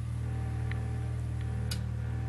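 A steady low hum with evenly spaced overtones, unchanging throughout, with three short clicks, the sharpest near the end.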